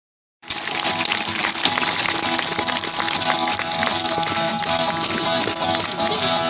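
Acoustic guitar strummed live and amplified through PA speakers, cutting in abruptly about half a second in and continuing as steady chord strumming.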